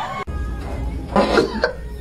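Music cuts off suddenly just after the start; a steady low rumble follows, with a short loud burst of a person's voice about a second in and a briefer one just after.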